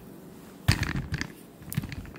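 Handling sounds: a sudden burst of rustling and knocks about two-thirds of a second in, then a few sharper clicks near the end.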